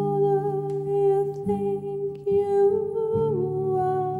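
A woman's voice holding one long sung note over acoustic guitar chords, the note stepping down a little about three seconds in.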